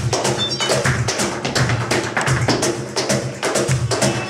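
Flamenco music: a rhythmic instrumental piece with guitar and sharp, dense percussive strokes.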